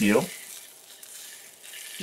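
Steak searing in a smoking-hot cast iron skillet: a soft, steady, high sizzle that dips mid-way and swells again near the end.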